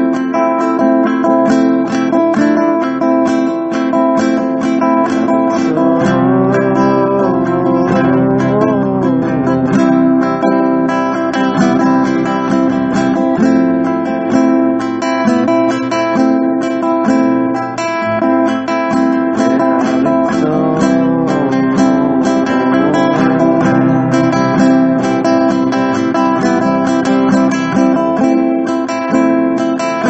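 Acoustic guitar strummed steadily, playing a niggun, a wordless devotional melody. A rising and falling melody line comes over the chords twice, about six and about twenty seconds in.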